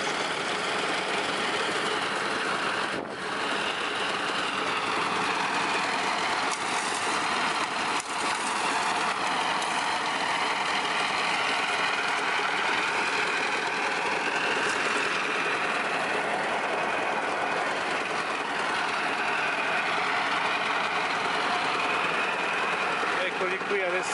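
Engine-driven grinding mill running steadily, crushing gold-bearing ore into powder with a dense, continuous machine noise.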